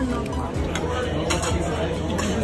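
Clinks of cutlery and dishes over restaurant chatter and background music, with a couple of sharp clinks about a second in.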